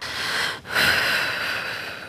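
A woman's breathy intake and then a longer sigh, with no voice in it, from someone close to tears.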